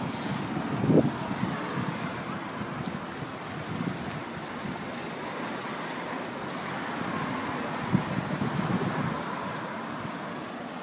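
Outdoor street ambience: a steady rush of wind on the microphone with road traffic passing, and a couple of brief low bumps about a second in and near the end.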